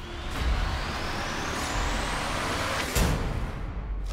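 Trailer sound effect: a dense noise swell with a rising whine that climbs for about three seconds, then cuts into a single sharp hit.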